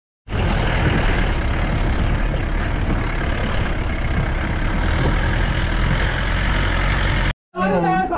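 Open off-road jeep driving over a rough dirt track: steady engine and tyre noise that starts a moment in and cuts off suddenly near the end.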